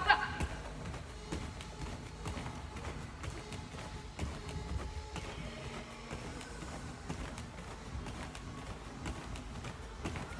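Repeated soft thuds of bare feet landing on tatami mats during jumping jacks, with faint background music.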